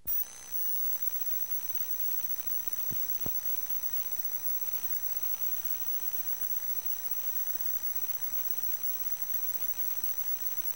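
Audio dropout on an old videotape: a steady hiss with a thin, high-pitched steady whine and no program sound, broken by two small clicks about three seconds in.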